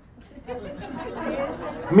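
Several people talking over one another in a room, a low overlapping chatter that starts about half a second in and grows louder, with one voice coming through clearly at the very end.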